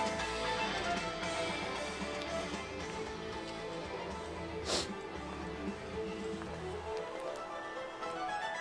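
Music for the Tesla Model Y light show played through the car's speakers, with a short swish near the middle.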